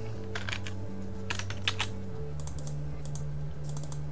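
Computer keyboard typing: scattered keystroke clicks in short runs. Under them, background music holds low sustained notes that change pitch twice.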